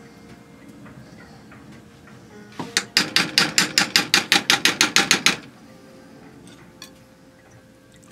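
A spoon tapping rapidly against the pan or the sour cream container, about six quick taps a second for a couple of seconds, starting about three seconds in. It is knocking sticky sour cream off the spoon into the sauce.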